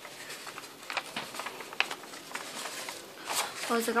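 Thin gift-wrap paper rustling and crackling as hands press its folds flat, with a few sharp crackles and a louder rustle near the end as the sheet is spread open.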